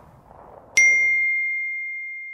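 A single text-message notification ding about a second in: one clear high tone that starts sharply, rings on and slowly fades.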